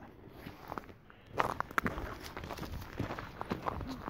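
Footsteps of a person walking, beginning about a second and a half in as a run of irregular, sharp steps.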